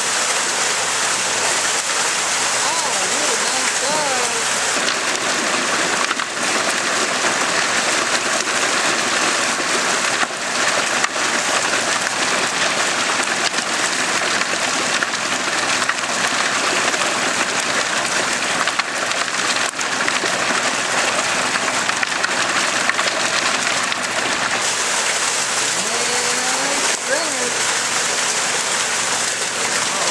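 Steady rush and splash of water as a stocking truck's tank is flushed out, live trout and water pouring down a chute into the lake.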